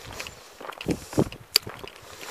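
Footsteps on a stony dirt track: a few steps, with one sharp click a little past the middle.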